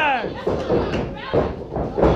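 A man's voice trailing off with a falling pitch, then arena noise with two dull thumps about a second apart.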